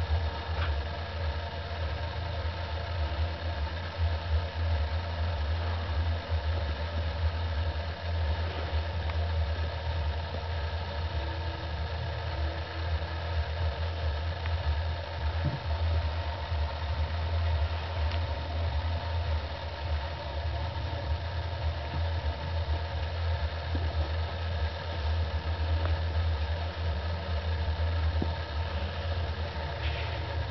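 A steady, unbroken low hum with a stack of steady tones above it, like a motor or appliance running, with a couple of faint knocks near the middle.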